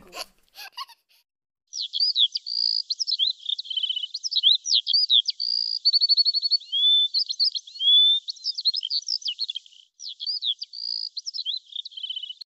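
Songbird song: a quick, varied run of high chirps, clear whistled notes, sweeping calls and short trills, starting about two seconds in, with a brief break near the end.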